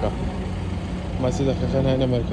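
People's voices talking in the second half, over a steady low rumble.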